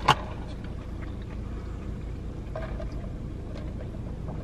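Steady low rumble of an idling car engine, heard inside the cabin, with one brief sharp sound right at the start.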